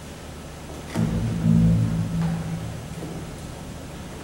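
A low instrument note from the band, possibly two, starting sharply about a second in and fading out over a second or two.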